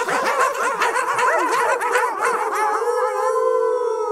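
A chorus of many overlapping animal cries, each rising and falling in pitch. Near the end they thin out into one long howl that slides down.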